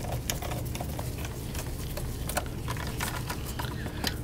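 Irregular light clicks and taps of hands working on a plastic laptop bottom panel during reassembly, over a steady low hum.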